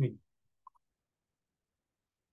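Near silence on the call line, broken about two-thirds of a second in by two tiny clicks in quick succession.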